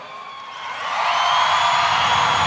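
A riser sound effect: a noisy swell that builds from about half a second in and gets loud by one second, with thin tones slowly climbing over it.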